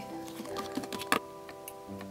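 Quiet background music with a few light plastic clicks and taps, the sharpest about a second in, from Littlest Pet Shop toy figurines being handled and moved on the set.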